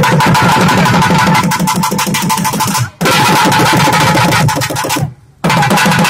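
Rapid, dense drumming on a two-headed barrel drum over a held high tone. It breaks off for a moment about three seconds in, and again for about half a second near five seconds.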